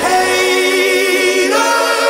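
Music: layered sung vocal harmonies held on long notes with no bass or drums, shifting to a new chord about one and a half seconds in.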